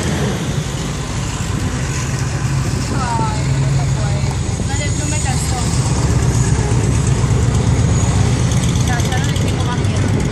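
A large touring motorcycle's engine running with a low, steady note, getting louder partway through as it rolls past.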